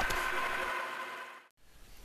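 Bandsaw running with a steady hiss and faint hum, fading out to silence about one and a half seconds in.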